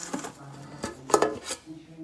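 A round metal cookie tin being opened, its lid handled against the rim: a few sharp metallic clanks, the loudest about a second in.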